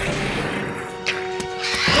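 Film score music with a held note, then near the end a loud, shrill creature screech together with a man's yell that falls in pitch.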